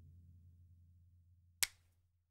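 The low tail of an electronic track's bass dying away after playback stops, then a single short sharp click about one and a half seconds in.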